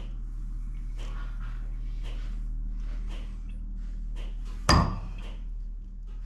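Metal lathe tailstock with a drill chuck being slid along the lathe bed toward the work: faint scraping and rubbing of metal on the bed ways, with one loud metallic clunk about three-quarters of the way through, over a steady low hum.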